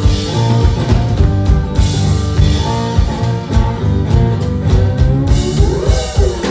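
Live blues-rock band playing an instrumental passage, with amplified acoustic guitar over a steady drum kit beat.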